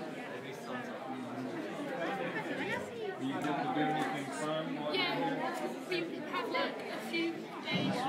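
Indistinct chatter of several voices talking at once, with no words standing out, some of them higher-pitched.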